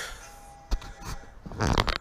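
A single sharp knock about a third of the way in, under a faint steady tone. Near the end comes a man's short, loud vocal "eh?".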